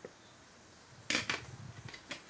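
Two sharp clacks of metal kitchen tongs about a second in, close together, followed by lighter handling noise as the tongs are used and put down.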